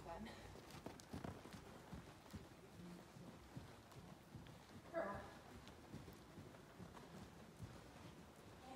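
Faint, muffled hoofbeats of a ridden horse trotting on soft sand arena footing, with a brief distant voice about five seconds in.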